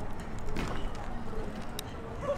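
A BMX bike rolling over a concrete roof deck under a low rumble of wind on the microphone, with one sharp click near the end.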